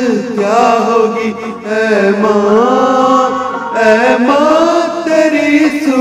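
A man singing a Hindi film song into a handheld microphone over a recorded backing track, drawing out long, wavering notes.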